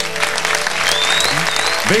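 Studio audience applauding as a song ends, with a high whistle rising about a second in.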